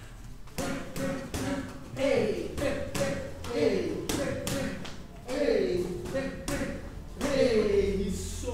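Boxing gloves smacking pads in quick punch combinations during a Muay Thai drill. A man's voice cuts in with four drawn-out calls that fall in pitch, about every one and a half to two seconds, between the strikes.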